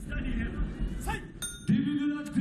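A ring bell strikes once with a short metallic ding about one and a half seconds in, signalling the start of the round. Crowd voices run before it, and a crowd chant starts just after.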